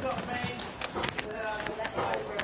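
Rustling of bedding and footsteps as a person gets up off a camp bed and walks away across grass, a string of short knocks and scuffs, with faint voices behind.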